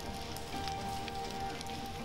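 Wildfire flames crackling in a thick spatter of small pops, under soft background music holding steady notes.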